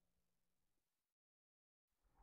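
Near silence: faint fading hum and hiss, dropping to total silence for most of a second.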